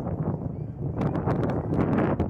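Wind buffeting the microphone with a low rumble, and a scatter of short, light clicks, more of them in the second second.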